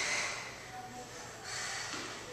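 A woman's heavy breathing after exertion: a sharp, hard exhale at the start and another about one and a half seconds in.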